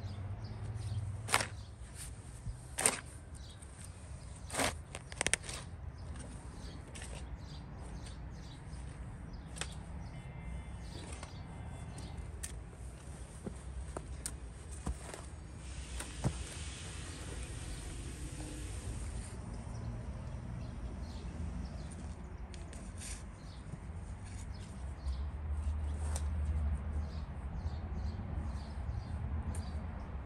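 Shovel digging into garden soil, with several sharp strikes of the blade in the first few seconds and scattered scrapes and knocks after. About halfway through there is a few-second stretch of crunching and rustling as soil is pressed down underfoot around a sapling.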